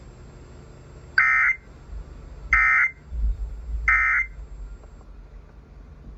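Three short bursts of Emergency Alert System digital data tones, a shrill warbling screech, about 1.4 s apart, played through a radio's speaker. They are the EAS end-of-message code that closes the required monthly test.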